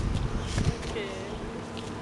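Low rumbling noise on the camera microphone for the first half-second or so, then a brief spoken "okay" about a second in.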